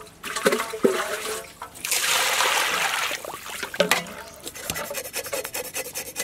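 Water poured into a metal bowl of whole fish for about a second, then hands rubbing and rinsing the fish in the water, a quick run of small splashes and scrapes against the bowl.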